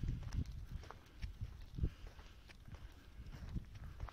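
Footsteps of a person walking on shell-strewn beach sand, an irregular run of soft steps and small clicks over a low steady rumble.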